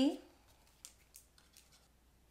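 Faint paper rustles and a few light clicks as a strip of patterned cardstock paper is handled and pressed down onto a card front.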